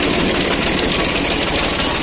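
New Holland tractor's diesel engine running steadily while pulling a disc plough through dry soil, a dense, even chug of rapid firing pulses.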